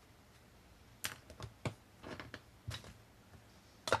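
Light clicks and knocks of small objects being handled and moved on a hobby cutting mat, about seven in all, the loudest near the end as a round lidded container is set down to stand the miniature on.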